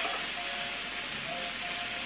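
Steady sizzling of food frying in a pan on the stove, an even hiss with no break.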